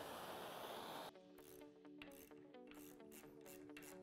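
Faint hiss of a handheld gas torch flame that stops about a second in, then quiet background music of plucked notes over held tones.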